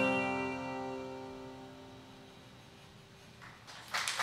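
The band's last chord, electric guitar with keyboard, ringing out and slowly fading away at the end of the song. Clapping starts just at the end.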